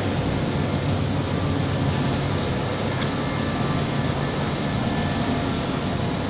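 Steady running noise of an automatic tool-change CNC wood router and its shop machinery: a constant low hum with hiss over it, without clear strokes or changes.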